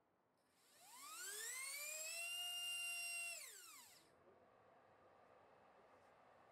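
T-Motor F20 1406-4100KV brushless motor on a thrust stand, driving a four-blade 3-inch prop on 4S. About a second in it spins up with a rising whine, holds full throttle for about two seconds, then winds down and stops about four seconds in. A fainter steady hiss follows.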